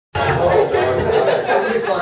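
Chatter of several people talking at once in a room, cutting in suddenly right at the start.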